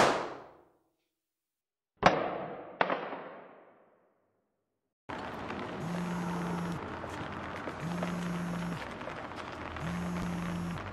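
Two gunshots about a second apart, each ringing briefly, following the tail of a louder shot. After a silence, outdoor ambience with a mobile phone buzzing in pulses of about a second, three times.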